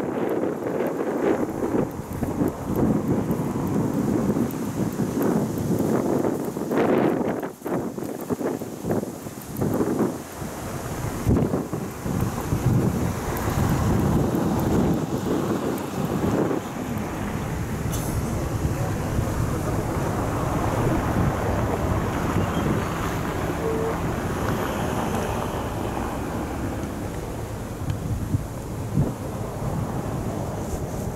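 Wind buffeting the microphone: an uneven, gusty rumbling noise, rougher in the first half and steadier later on.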